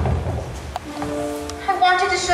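Stage musical song: voices singing long held notes over musical accompaniment.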